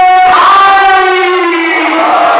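A man's voice chanting a long, held note in an elegiac majlis recitation, carried over a microphone and PA. About a third of a second in the note slides to a new pitch, which he then holds.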